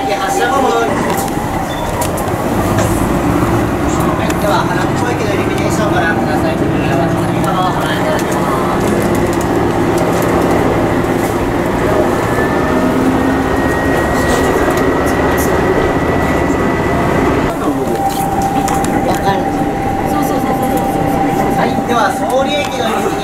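Inside a diesel train's passenger car: a steady running rumble, with passengers talking throughout. A faint whine rises slowly for a few seconds past the middle.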